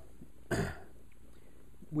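A person clears their throat once, briefly, about half a second in, against a quiet room.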